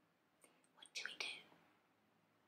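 Near silence with a brief, faint whispered breath of voice about a second in.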